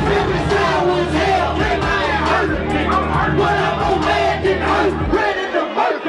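Live hip hop music played loud over a club sound system, a steady bass line under many voices of the crowd shouting along; the bass cuts out about five seconds in.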